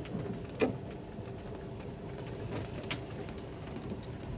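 Inside a slowly moving vehicle: a steady low engine and road hum, with scattered small clicks and rattles and one sharp knock a little over half a second in.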